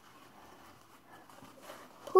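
Near silence: faint room tone, with a slight soft sound near the end.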